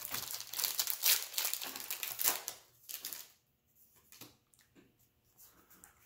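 Foil booster-pack wrapper crinkling as it is torn open: dense, sharp crackling for the first three seconds or so, then only a few faint ticks.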